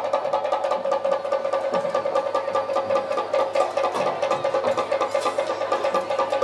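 Music: rapid, even drumbeats on a cylindrical drum over a steady sustained drone.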